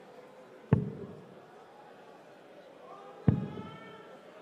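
Two steel-tip darts thudding into a Winmau Blade 6 Triple Core bristle dartboard, about two and a half seconds apart; each is a sharp thud with a short echo from the hall. Crowd voices in the hall rise faintly near the end.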